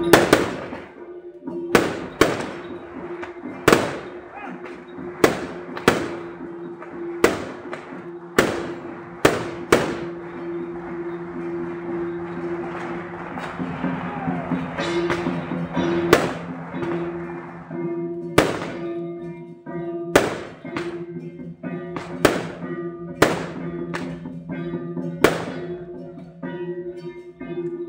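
Firecrackers going off as single sharp bangs every second or two, with a lull in the middle, over steady sustained-tone procession music.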